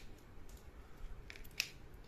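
A few faint, sharp clicks scattered across two seconds, the sharpest about one and a half seconds in, over a steady low room hum.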